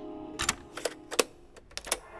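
A series of about six sharp mechanical clicks, irregularly spaced with a quick cluster near the end, from buttons being pressed on studio cassette-deck equipment.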